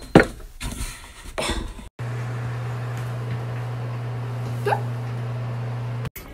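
A few knocks and clatters, then, after a break, a steady low hum. A short rising squeak comes about three-quarters of the way through.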